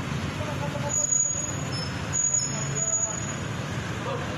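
Steady street noise of vehicle engines running, mixed with indistinct voices.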